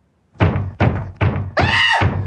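Four heavy, evenly spaced thumps, each ringing briefly, followed near the end by a loud, drawn-out wavering cry.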